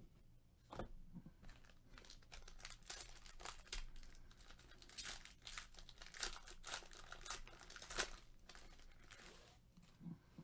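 Foil wrapper of a Panini Prizm baseball card hobby pack crinkling and tearing as it is ripped open by hand. The crackling starts about a second in, with the loudest rip near the end.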